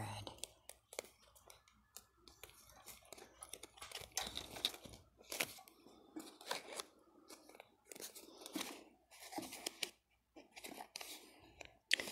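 Plastic packaging of a Clorox shower curtain liner crinkling and crackling irregularly as it is handled and turned over in the hand.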